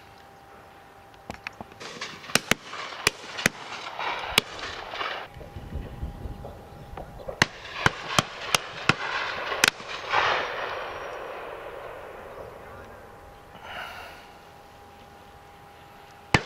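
Shotguns firing from a line of guns at driven game birds: a quick run of sharp shots between about one and four seconds in, then a denser burst between about seven and ten seconds in, each run trailed by a rolling echo.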